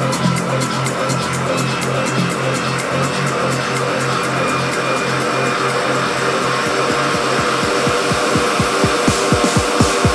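Electronic dance music from a DJ mix, with a steady pulsing bass beat. In the second half, a roll of low drum hits, each falling in pitch, speeds up into a build-up.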